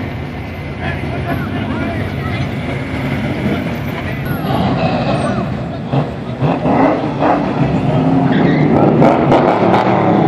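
Classic cars and pickups driving slowly past one after another, their engines running in a continuous procession that grows louder over the last few seconds, with voices of onlookers mixed in.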